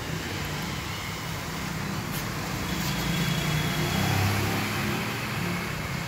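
A motor vehicle engine running nearby: a low rumble that swells to its loudest about four seconds in and then eases off, over general traffic noise.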